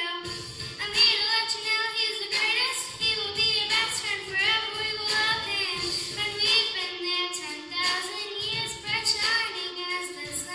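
Children and a woman singing a song together over musical accompaniment.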